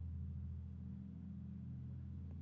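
A steady low background hum with no other events, the kind left by a computer fan or electrical noise on the recording.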